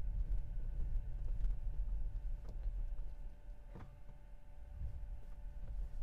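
Low rumble of a Tesla Model 3's tyres churning through unplowed snow under full throttle, heard inside the cabin, with a faint steady whine. Traction control is holding power back as the rear wheels slip. The rumble eases about four seconds in.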